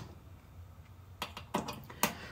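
Near quiet with no synthesizer tone: oscillator two's amplitude is turned all the way down, so nothing comes from the output. A few faint clicks sound about a second and a half in.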